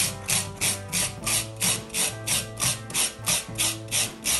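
Cinnamon stick being grated on a long metal rasp grater: dry rasping strokes, about three a second, each stroke scraping the bark against the blade.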